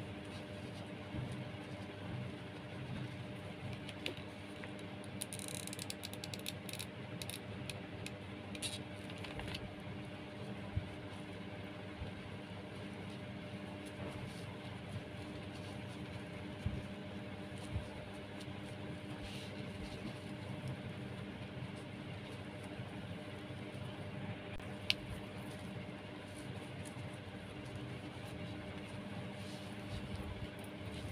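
A steady low mechanical hum throughout, with scattered small clicks and rustles from hands handling jute twine and a plastic piece, a quick run of them about five to ten seconds in.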